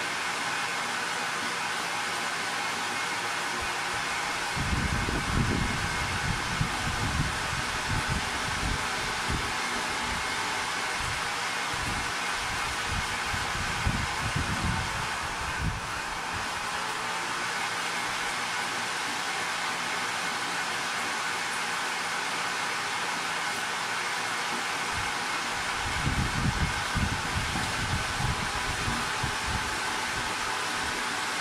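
Electric machinery in a vermicompost pelleting setup running steadily, an even whirring hiss with a faint high hum, while worm castings are fed into its hopper. Irregular low rumbles come and go for about ten seconds from roughly five seconds in, and again near the end.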